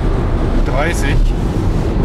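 Steady low road and wind rumble inside a Tesla Model Y's cabin while cruising at about 130 km/h on the motorway.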